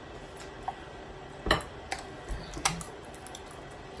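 Table clatter while eating a seafood boil: a few scattered sharp clicks and knocks, the loudest about a second and a half in.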